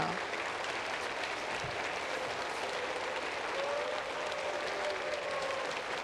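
Audience applauding steadily, many hands clapping, with a faint voice underneath.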